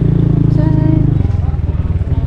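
A small motorbike engine running close under the riders. About a second in, its note drops and turns rougher as the bike slows down.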